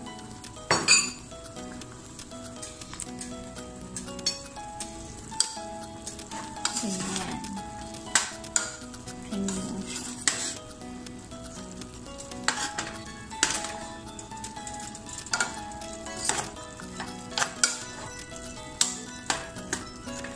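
A metal spoon stirring chicken adobo with string beans and mushrooms in a pan, clinking and scraping against the pan at irregular moments, over the bubbling of the simmering sauce.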